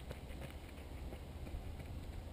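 Faint footfalls of a runner on a dirt path, clearest in the first half second as she runs off, over a steady low rumble.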